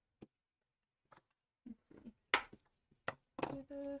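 A few light, scattered clicks and knocks of craft supplies (ink pads and brushes) being picked up and set down on a tabletop, with a sharper clack about halfway through.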